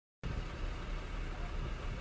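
Steady low rumble of a vehicle's engine heard from inside its cabin.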